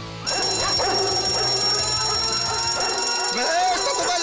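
A cartoon sound effect of an alarm starts ringing about a quarter second in as a cluster of steady high tones. Guard dogs bark and whine over it.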